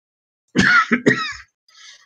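A person coughing twice, about half a second apart, with a fainter short sound just after.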